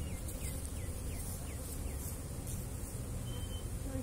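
Honeybees buzzing steadily around their hives, with a run of short, high, quickly falling chirps repeated about three times a second over the first half.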